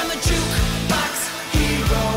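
Rock band music: electric guitar playing over bass and drums.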